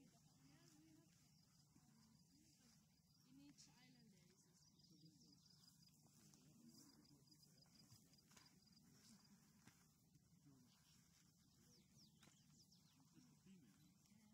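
Near silence: faint distant voices over quiet outdoor background sound.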